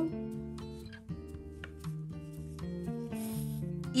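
Soft guitar background music with sustained notes, and a brief rasp a little over three seconds in, like wool yarn being drawn through burlap canvas.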